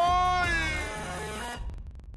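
A football commentator's long, drawn-out goal shout, one held high-pitched cry that bends slightly up in pitch, cutting off suddenly about a second and a half in.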